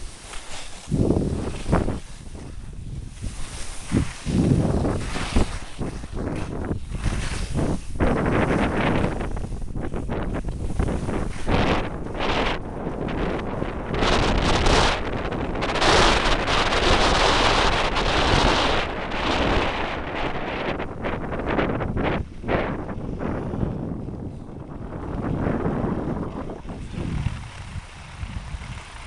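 Wind buffeting the microphone and skis hissing and scraping over packed snow during a downhill run, rising and falling in gusts. The rush eases off over the last few seconds as the skier slows.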